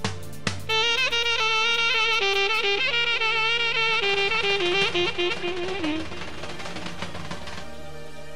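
Live band music: a saxophone plays a fast, ornamented melody over a steady held chord. The melody starts just under a second in and stops about six seconds in. Two sharp hits sound at the very start.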